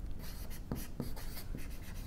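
Chalk writing on a blackboard: a quick series of short scratching strokes and taps as letters are written.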